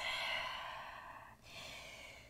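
A woman breathing out audibly in a long sigh that fades over about a second, followed by a second, fainter breath, while holding a yoga pose after exertion.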